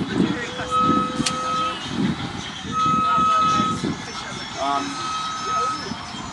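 An electronic beep sounding three times, each about a second long and about two seconds apart, with a lower steady tone under the first two.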